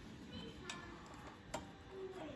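A couple of faint, light metal clicks from a nut driver on a 10 mm nut as the nut is worked off the air filter housing studs of a small engine.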